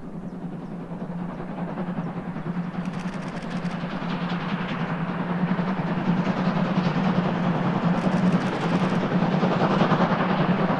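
Train hauled by the steam locomotive 01 066 approaching, growing steadily louder throughout, with a steady low hum under the running noise.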